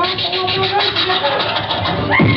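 Beatboxing into a microphone: a steady held hum under a fast, even run of clicks, about ten a second. The hum stops shortly before the end.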